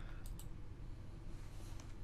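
A few light computer mouse clicks over a low steady hum.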